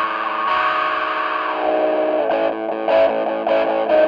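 Distorted Gibson Les Paul electric guitar played through a Systech Harmonic Energizer clone pedal into a Marshall JCM800 combo amp. A chord rings for about two seconds, then gives way to repeated picked notes with a strong nasal midrange peak.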